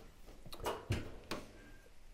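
Oven door of a kitchen range being opened: a few light clicks and knocks, three in about a second.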